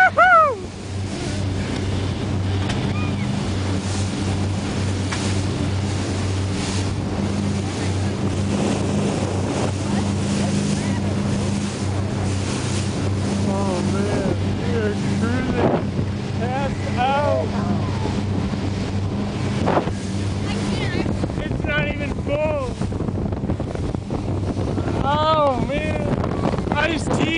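Cabin cruiser underway: its engine drones steadily under the rush of wind and water. The engine drone fades out about twenty seconds in.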